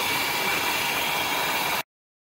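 454 V8 engine idling steadily, heard close up in the open engine compartment, firing on all eight cylinders now that its plug wires are corrected. The sound cuts off abruptly near the end.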